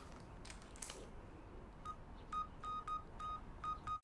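Keypad beeps from a handheld phone as a number is keyed in: about seven short beeps, all at the same pitch and unevenly spaced, starting about halfway through. A faint click comes before them.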